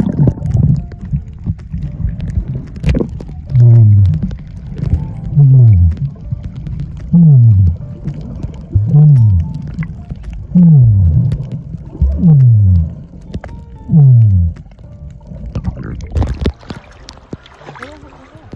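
Underwater recording of a snorkeler breathing through a snorkel, muffled by the water. A low moaning tone falling in pitch comes with each breath, seven times at a steady pace of about one every second and a half to two seconds.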